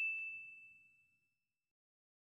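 A single high-pitched notification-bell ding from a subscribe-button animation, ringing on and fading out within the first second.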